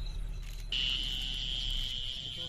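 Crickets trilling in a steady, high, unbroken tone that comes in loudly about two-thirds of a second in, over a low steady hum.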